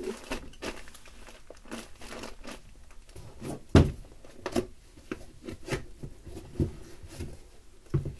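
Plastic packaging crinkling and rustling as a wrapped item is handled, with a thud about four seconds in.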